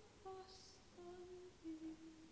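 Very quiet opera music in a lull between phrases: three soft held notes, each a step lower than the one before.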